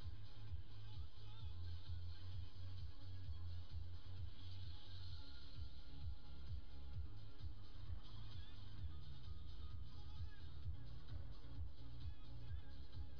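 Low, steady rumble of a car's interior picked up by a dashcam while the car stands in traffic, with faint music under it.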